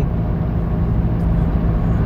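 Car running, heard from inside the cabin: a steady low rumble with an even hum.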